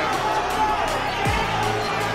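Background music: a steady low drone with a deep bass hit that drops in pitch, about a second in.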